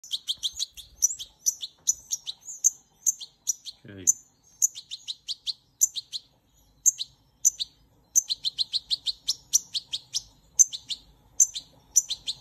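A chick peeping rapidly, several short high peeps a second, with a brief pause a little past the middle.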